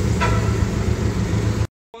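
A Porsche Boxster's engine running at low speed as the car pulls away: a steady low rumble that cuts off abruptly near the end.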